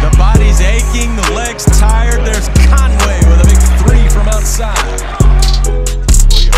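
Hip-hop music with deep bass notes that start about once a second and slowly fade, crisp hi-hat ticks, and a bending vocal line.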